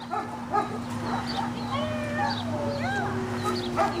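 A dog whining and whimpering in thin, high, rising and falling glides while lunging at and gripping a bite tug, excited in protection work.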